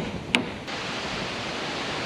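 Two hammer blows on the wooden rafter framing in the first half-second, then steady wind noise rushing over the microphone.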